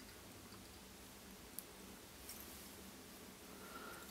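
Near silence: room tone, with a faint sharp click about a second and a half in and a few softer ticks of fly-tying tools and thread being handled.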